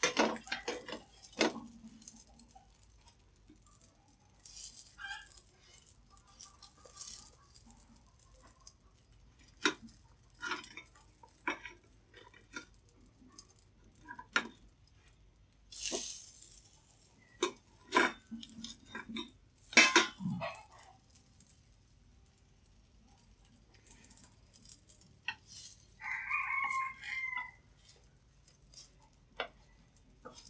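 Chopsticks and a metal spatula clicking, scraping and knocking against a nonstick frying pan as pieces of pan-fried vegetarian fish are turned over low heat, with a few louder knocks. Near the end a rooster crows once in the background.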